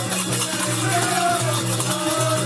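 Group folk song performance: a melody over a steady harmonium drone, with a drum and many hands clapping in rhythm.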